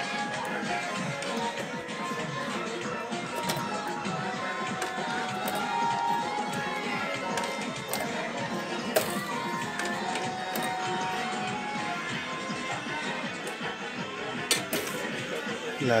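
Electronic music and short beeping tones from an arcade pinball-style gambling machine, over a background of voices. There is a sharp click about nine seconds in and another near the end.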